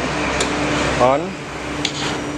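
Ignition key of a Honda Beat FI scooter switched on with a click, followed by a steady low hum that carries on throughout.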